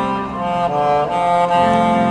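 Saxophone playing a slow melody in held notes over a recorded accompaniment with strings.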